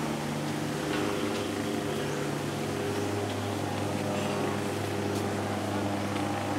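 A steady, low engine drone with a constant hum, its pitch settling lower about halfway through.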